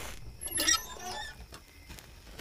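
A struck match burns on, fading after its flare. About half a second in, a small oil lantern's metal parts give a short squeak and rattle as the lantern is lit.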